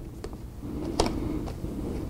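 Handling noise from hands smoothing a swimsuit and a plastic-backed heat transfer on a heat press platen: soft rustling with a few light clicks, the sharpest about a second in, over a faint steady hum.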